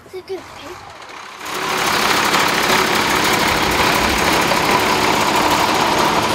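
School bus engine running, turning loud and steady about a second and a half in.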